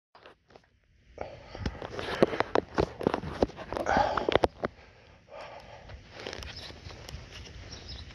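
Handling noise from a phone being held and adjusted: a rapid run of clicks, knocks and rubbing against the microphone from about a second in to just past halfway, then a quieter steady rustle.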